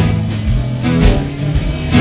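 A live band playing a blues song between sung lines, guitar to the fore over bass and drums, with cymbal hits at the start and about a second in.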